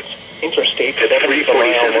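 A NOAA Weather Radio broadcast voice reading a severe thunderstorm warning through a small radio speaker, with a short pause at the start before it continues.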